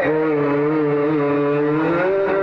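A male naat reciter holding one long sung note into a microphone, the pitch steady with a slight waver.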